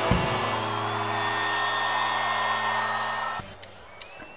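A live rock band's electric guitars, bass and drums holding a final sustained chord after a drum hit, which cuts off suddenly about three and a half seconds in, leaving it much quieter.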